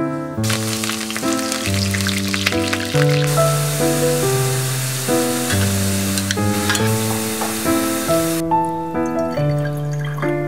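Sliced garlic deep-frying in hot oil in a small pan: a dense crackling sizzle that starts about half a second in and cuts off sharply a little after eight seconds. Piano music plays throughout.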